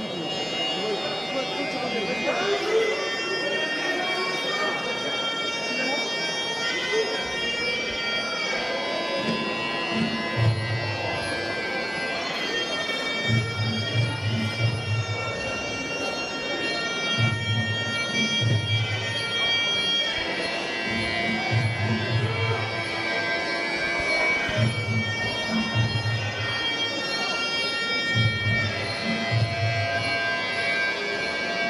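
Traditional Muay Thai ring music (sarama): a nasal Thai oboe (pi java) plays a sustained, wavering melody. From about ten seconds in it is joined by a steady pattern of low drum beats.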